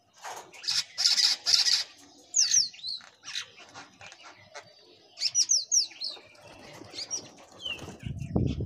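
House crows pecking rice grains off a concrete floor, beaks tapping, with a cluster of loud noisy bursts about a second in. Small birds chirp in the background in quick, high, falling notes, in short runs a few times.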